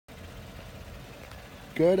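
A steady low background rumble, then a man starts speaking near the end.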